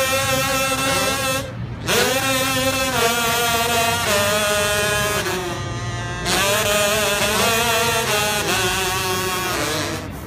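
Several voices sung through ravi, dried, hollowed half-gourds used as voice modifiers, playing a melody together in long held phrases. There are two short pauses, about one and a half and six seconds in.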